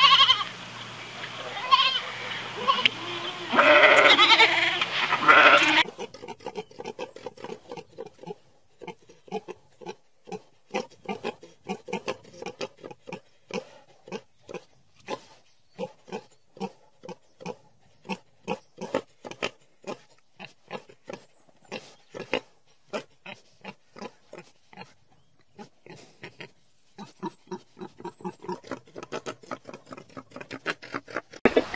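A mouflon bleating loudly during the first six seconds. Then wild boars grunting in a long run of short grunts, about two or three a second.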